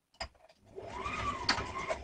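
Brother electric sewing machine stitching a short run: after a click, the motor speeds up and slows down again over about a second, with another sharp click partway through.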